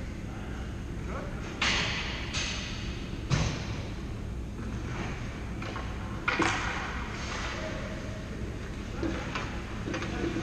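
Ice hockey skate blades scraping the ice in short strokes, four main scrapes that each fade within about half a second, with a sharp knock about a third of the way in.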